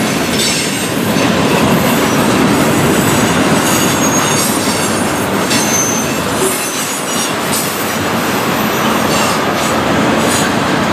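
Freight cars of a manifest train rolling past close by: a steady loud rumble and rattle of wheels on the rails, with a brief high wheel squeal about halfway through.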